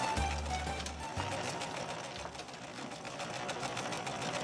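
Vintage black sewing machine running, stitching with a rapid, fine ticking. Background music fades out under it in the first second.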